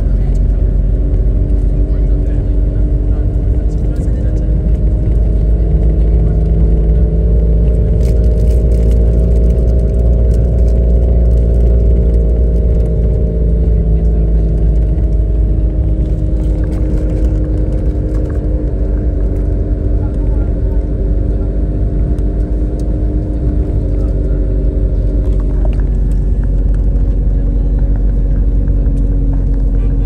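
Car engine and road rumble heard from inside the cabin: a loud, steady drone whose engine note rises a little in pitch around ten seconds in, then eases back down.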